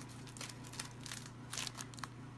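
Clear plastic packaging around a pack of patterned paper crinkling and rustling as it is handled, a few short, faint crackles.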